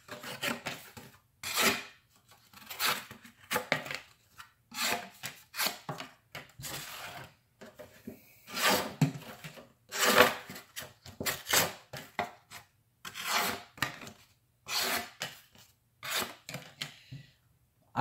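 A thin-ground Civivi Dogma folding knife slicing through cardboard and other scrap material. It makes a string of about fifteen short rasping cuts, roughly one a second, with brief pauses between them.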